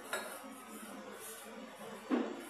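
A metal clink as a three-piece cocktail shaker is handled: one sharp knock just after the start, then low room noise.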